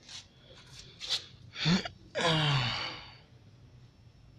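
A man sighing: a sharp breath about a second in, then a long voiced sigh of nearly a second that falls steadily in pitch.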